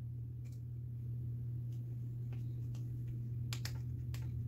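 Several faint, light clicks and taps from fingers handling a vinyl sheet and an acrylic keychain blank on a tabletop, with a small cluster near the end, over a steady low hum.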